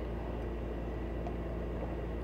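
A steady low hum with a faint even hiss over it, unchanging throughout, with no distinct sounds.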